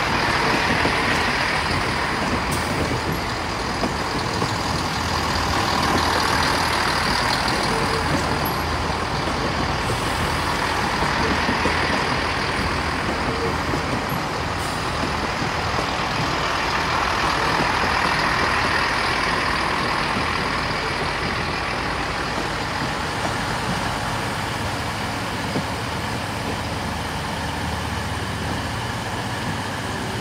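Class 165 diesel multiple unit pulling away under power, its underfloor diesel engines working with wheel and rail noise; the sound swells and eases several times and dies down slightly near the end as the train draws away.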